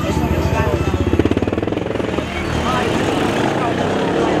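A motor vehicle engine running close by with a rapid, even pulsing for about the first two seconds, over steady street traffic noise, with brief talk later on.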